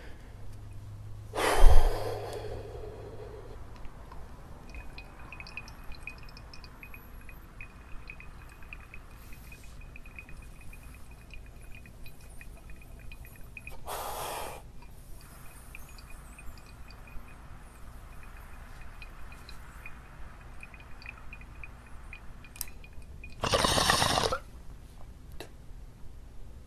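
Ice-filled glass beaker bong bubbling through its water as one long hit is drawn, with a knock near the start. There is a short sharp inhale about halfway through and a louder one shortly before the end, as the hit is pulled.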